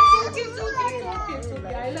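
A toddler fussing and babbling, with adult voices close by and background music underneath; a loud vocal burst ends right at the start.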